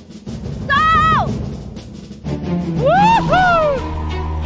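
An excited, high-pitched shout about a second in, then the show's background music comes in with a drum hit about two seconds in, overlaid by two swooping rise-and-fall tones.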